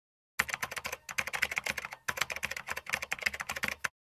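A rapid run of light, sharp clicks, roughly ten a second, with brief breaks about one and two seconds in, stopping just before the end.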